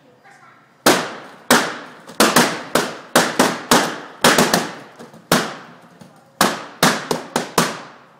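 Balloons being popped one after another, about twenty loud, sharp bangs at an uneven pace, some in quick bursts, each dying off quickly in a small room.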